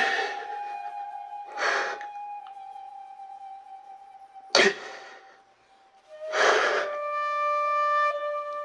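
A man crying, with three sharp sobbing breaths about two seconds apart, over soft background music of long held notes.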